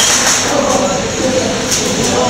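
Indistinct voices of several people talking at once in a large hall.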